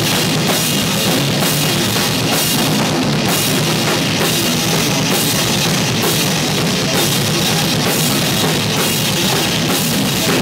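A live heavy rock band playing loud and steady, a drum kit with cymbals and bass drum under an electric guitar.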